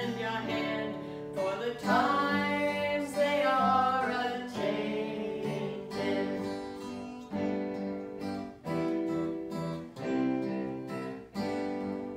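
Acoustic guitar strummed to accompany a woman singing.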